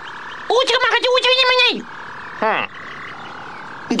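Cartoon alien voice babbling in an invented language. It gives a warbling, croak-like phrase in the first half and a short falling call a little past the middle, over a faint steady electronic hum. It is the crew's report that the spaceship is repaired.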